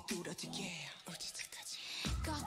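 K-pop song playing in a break where the beat drops out, leaving a breathy, whispered female vocal; the bass comes back right after.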